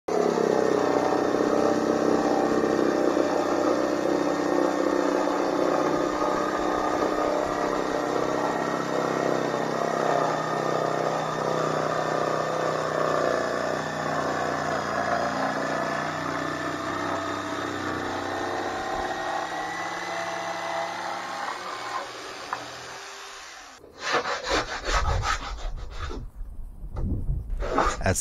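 A jigsaw runs steadily through a sheet of plywood, then stops about 22 seconds in. After a short pause come rough rubbing strokes of a hand tool along the plywood edge, rounding over the corner.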